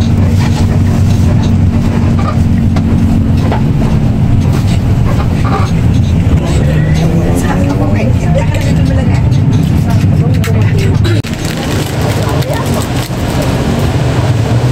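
Coach bus engine and road noise heard from inside the passenger cabin: a loud, steady low drone that drops slightly about eleven seconds in.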